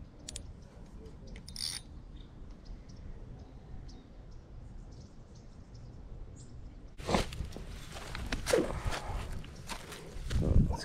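Footsteps crunching on dry dirt and dead grass, starting suddenly about seven seconds in, with rustling as fishing rods and a bag are handled. Before that there is only a faint low rumble and a few small clicks.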